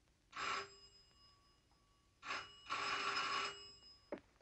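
Bedside telephone bell ringing for an incoming call: a short ring about half a second in, then a longer ring starting just after two seconds, broken by a brief gap.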